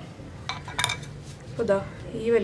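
A steel kitchen knife set down on a marble board: two sharp clinks with a short metallic ring, about half a second and just under a second in.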